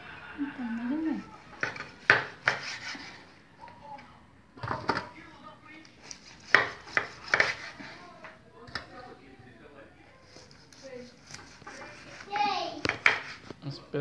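Knife cutting a cow's foot into rounds on a wooden cutting board: a series of sharp, irregular knocks as the blade meets the board and the cut pieces are set down in an aluminium tray.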